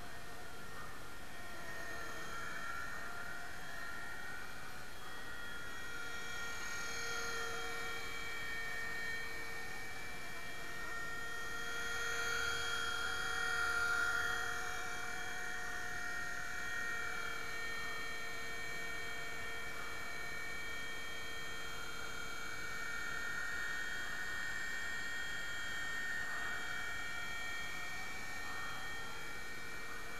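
Nine Eagles Solo Pro 270a electric RC helicopter in flight: a steady motor and rotor whine made of several tones that waver slightly in pitch with the throttle, growing louder a little before the middle.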